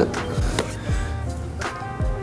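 Background music: a slow instrumental beat with held notes and regular drum hits.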